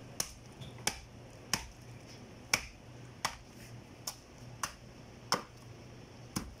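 Butcher's knife chopping into a cow's head on a wooden block: about eight sharp, short strikes, roughly one every two-thirds of a second.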